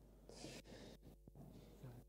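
Near silence: church room tone, with a faint brief hiss about a third of a second in and a few soft clicks after it.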